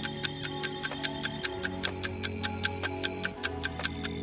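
Countdown-timer sound effect of a rest period: an even clock-like ticking, about four ticks a second, over a soft sustained synth chord that changes twice.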